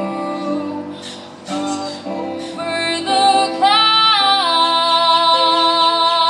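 A choir singing long held notes with some instrumental accompaniment. The singing swells and rises in pitch about halfway through, then holds there.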